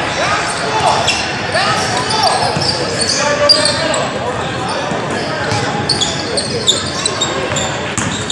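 Basketball game sounds echoing in a large gym: the ball bouncing on the hardwood floor, short high squeaks, and players and spectators calling out over a steady crowd murmur.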